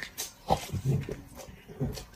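A man slurping wide noodles from a bowl of broth and chewing them, in a few separate loud slurps and mouth noises, the loudest about half a second in.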